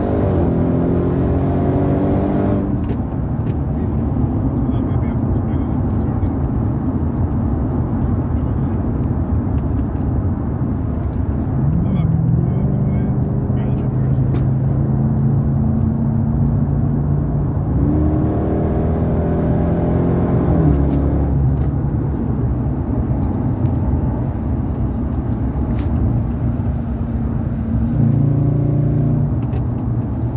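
Supercharged 6.2-litre V8 of a Dodge Durango SRT Hellcat, heard from inside the cabin while driving. The engine note climbs and drops with the throttle several times over steady road noise.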